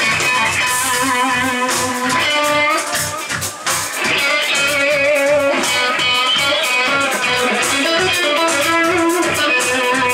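Live instrumental rock from a band of two electric guitars, bass guitar and drums, with the guitars playing melodic lead lines over a steady, driving low-end pulse.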